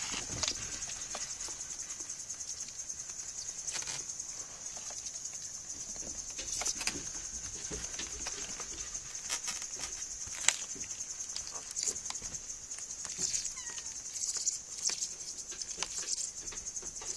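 A steady high-pitched insect trill, typical of crickets, with scattered short taps and scuffles as kittens paw and pounce at a large beetle on the floor.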